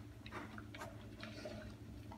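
A dog eating from a plastic bowl: four or five quiet, scattered clicks of chewing and of food and teeth against the bowl, over a steady low hum.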